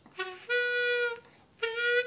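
Custom Suzuki diatonic harmonica sounding two held notes at the same pitch, each starting with a brief lower pitch that jumps up to the main note. This is a bend tried with too little air, so the bend does not take.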